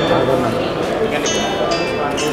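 Indistinct chatter of many voices in a crowded hall, with music in the background.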